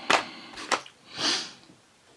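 Colouring pencils being put away: two light clicks about half a second apart, then a short hiss.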